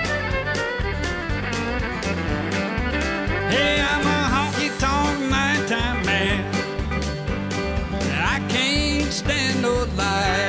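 Live country band playing: acoustic guitars strumming over a steady bass beat, with a fiddle lead of wavering, sliding notes coming in about three and a half seconds in and a steep upward slide near the end.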